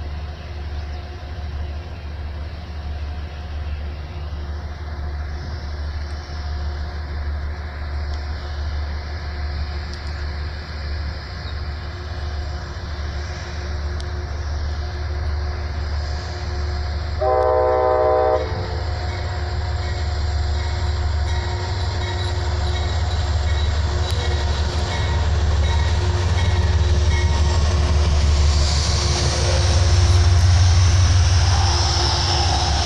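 Amtrak GE Genesis diesel locomotive approaching with its engine rumbling, growing steadily louder as it nears and passes close by. It gives one short horn blast a little over halfway through.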